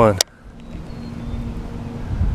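A sharp click just after the cast, then wind rumbling on the microphone under a steady low hum that comes in about a second in: an electric trolling motor (Minn Kota Terrova) running to hold the boat in place.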